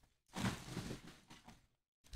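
Paper padded mailer and bubble wrap rustling and crinkling as hands open the envelope and pull out a wrapped trading card, lasting about a second and a half.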